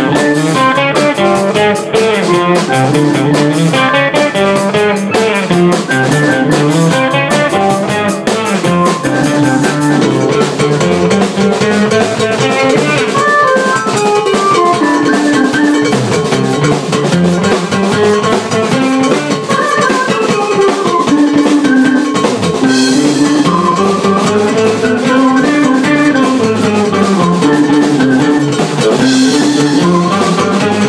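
A small rock band playing live: drum kit, electric guitar and keyboard together. Busy cymbal strokes fill the first third and thin out about ten seconds in, while the melodic lines carry on.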